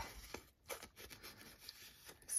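Faint, soft rubbing of an ink blending tool's pad against the paper edge of a folded mini envelope, with a couple of light taps in the first second.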